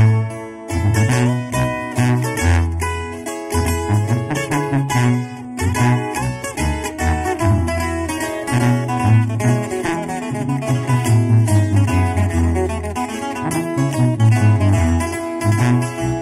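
Instrumental regional Mexicano intro: a twelve-string acoustic guitar picks a quick melody over a second acoustic guitar's strumming, with a sousaphone playing the bass line.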